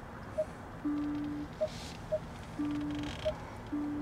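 XPeng G6 parking-sensor warning tones in the cabin while reversing: a low electronic tone about half a second long sounds three times, about every second and a half, with short higher pips in between.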